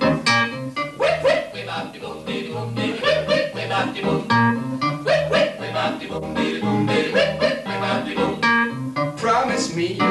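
Upbeat instrumental song intro played on an electronic keyboard, with a bass note bouncing about twice a second under the melody.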